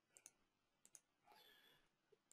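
Near silence broken by a few faint computer mouse clicks, about three, as bar sizes are picked from dropdown lists in the design software.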